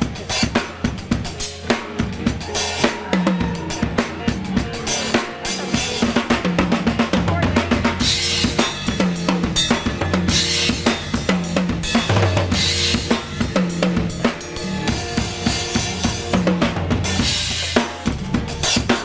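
Acoustic drum kit with Sabian B8X cymbals played live in a fast, busy groove: dense bass drum, snare and cymbal strikes throughout.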